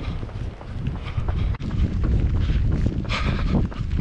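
Wind buffeting the camera microphone as a steady low rumble, with a runner's footsteps underneath.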